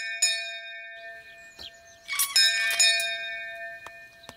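A castle doorbell, a cartoon sound effect, rings twice: it is struck at the very start and again about two seconds in, and each stroke rings on and fades slowly.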